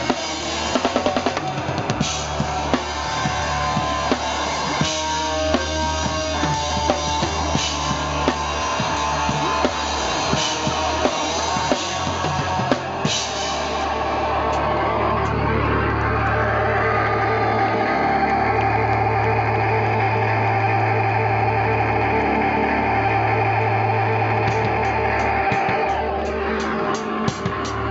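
Live rock band led by a drum kit: fast drumming with bass drum, snare and cymbals for about the first half, ending in a cymbal crash. After that, held notes from the band ring on steadily with little drumming.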